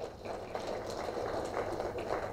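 A pause in a man's speech: faint steady room noise picked up through the microphone, with a low hum underneath.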